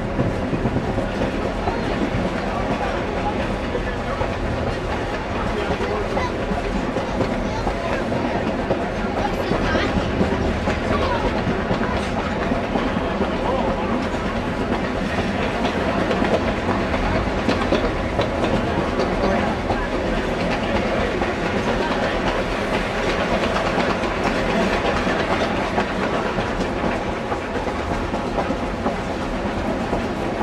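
Steady running noise of the Durango and Silverton's narrow-gauge passenger cars heard from on board: wheels clattering over the rail joints and the cars rattling as the train rolls along.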